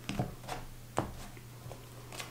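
A few soft clicks and rustles of tarot cards being handled and turned over, over a steady low electrical hum.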